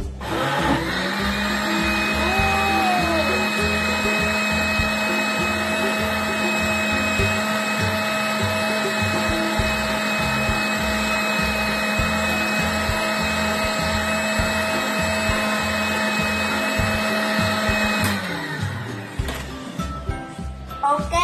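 Panasonic countertop blender motor starting up, running at a steady whine while it blends a jar of passion fruit juice, then switched off near the end and winding down.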